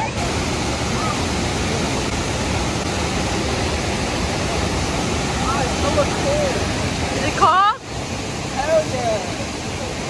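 Steady roar of Burney Falls, a large waterfall, heard close by at the pool's edge as an even, dense rush of water noise. The roar drops out briefly about three quarters of the way through.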